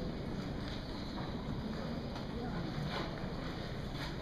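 Steady room noise of an auditorium with faint murmur and rustling from the audience and seated players, and a couple of faint clicks; the band is not playing.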